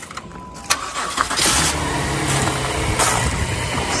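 A 2015 Acura MDX's 3.5-litre V6 is cranked and starts right up about a second in, then settles into a steady idle.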